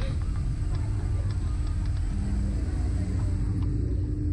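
Steady low rumble with a constant hum over it, with a brief lower tone twice in the second half: background noise on the slingshot ride's onboard camera as the riders wait to launch.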